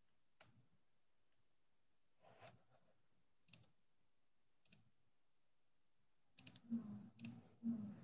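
Near silence broken by faint sharp clicks: four single clicks spaced about a second apart, then a quicker run of clicks near the end.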